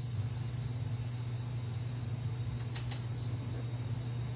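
A steady low hum of background machinery, with no speech.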